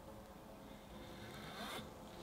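Knife blade drawn back out of a sliced layered cheesecake, making a short, scratchy scrape about a second and a half in.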